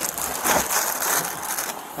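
Plastic wrapping on bundled bags crinkling and rustling as they are handled with a gloved hand, a dense continuous crackle.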